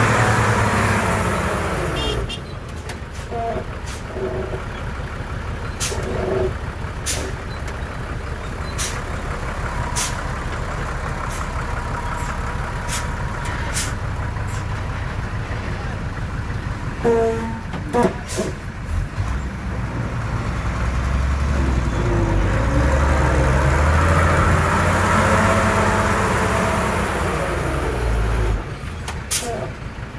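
Heavy diesel dump truck engine running, with sharp clicks and air hisses in the first part. From about twenty seconds in the engine revs up and holds high as the tipper bed is raised to dump its load of soil, then drops off near the end.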